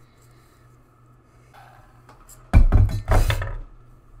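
Two short bursts of bumping and rustling close to the microphone, each about half a second long, a little past halfway; handling noise.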